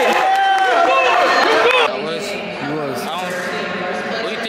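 People's voices, high loud calls or exclaiming in the first two seconds, then quieter talk over a background murmur of a crowd in a large hall.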